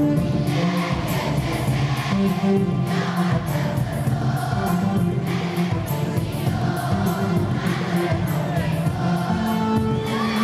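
A large children's choir singing together with music, steady and full throughout.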